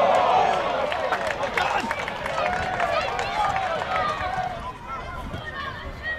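Footballers and spectators shouting and calling out across the pitch, several voices overlapping, loudest at the start and quieter after about four and a half seconds.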